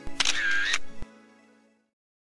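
Edited-in camera shutter sound effect, one short loud snap, laid over the end of background music that then fades away to silence.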